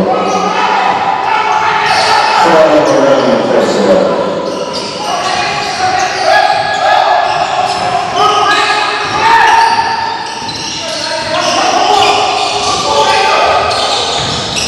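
Basketball being dribbled on a hardwood gym floor during play, with voices of players and onlookers, all echoing in a large hall.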